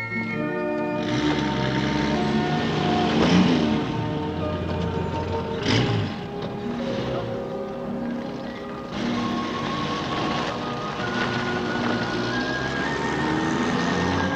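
Film score music with held notes that change pitch over a rushing, noisy swell, and one sharp hit a little before the middle.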